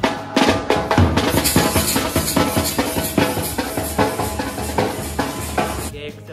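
Dhol drum beaten with sticks in a fast, loud festive beat, with a held melodic tone running under it; it starts suddenly and cuts off at the end.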